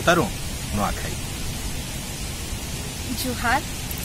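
Steady, even background hiss, broken by a few short snatches of a person's voice near the start and again shortly before the end.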